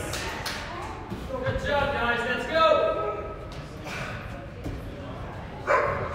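Raised voices shouting in a large gym hall, with a thud near the end.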